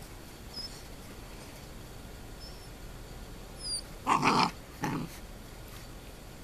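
Sheepadoodle puppy barking twice in quick succession, about four seconds in and again a second later.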